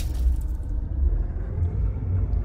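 Deep, low rumble from a cinematic logo-intro sound effect, swelling and easing a few times.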